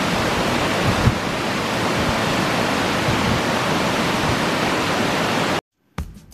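Mountain stream rushing over a small rocky cascade: a loud, steady rush of water that cuts off abruptly near the end.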